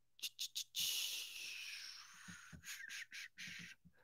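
Soft breath and mouth noises close to a desk microphone. A few short clicks come first, then a long breathy exhale about a second in, then more short clicks, over a faint steady hum.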